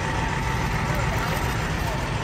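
Heavy farm machinery engine running steadily during corn chopping: a constant low rumble with a thin steady whine above it.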